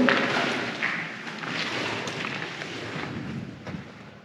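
Footsteps on a gritty, debris-strewn floor with a few soft thuds, getting quieter.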